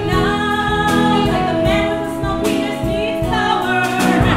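A woman singing a show tune in held, sustained notes over live instrumental accompaniment.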